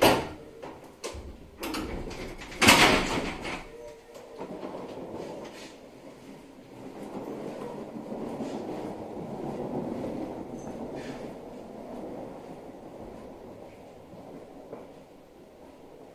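Doors of a stationary 701-series electric train sliding shut with several heavy thumps in the first few seconds, the loudest about three seconds in. A steady low hum from the standing train follows.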